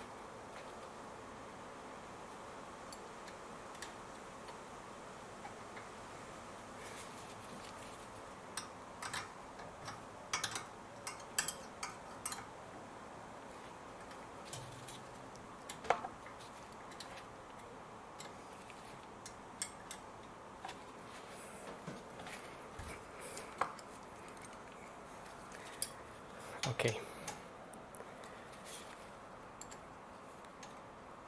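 Steel spanners and an Allen key clinking against each other and against the brake caliper as a tight 7mm hex caliper bolt is worked loose: scattered sharp metallic clicks, in clusters about seven seconds in and again from about sixteen seconds, over a steady background hiss.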